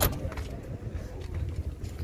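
Low steady rumble of motor vehicles running nearby, with a sharp click right at the start.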